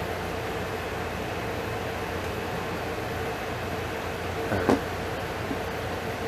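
Room air conditioner running steadily: an even hiss over a low hum. There is one short knock about three-quarters of the way through.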